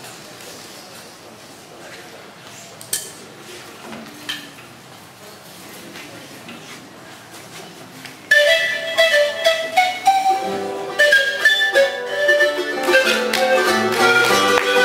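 A siku (Andean panpipe) starts a melody suddenly, about eight seconds in, after quiet stage room tone with a few small knocks. About two seconds later charango strumming joins under it.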